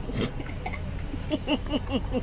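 Low engine and road rumble inside a vehicle's cabin, with a quick run of short voice sounds in the second half.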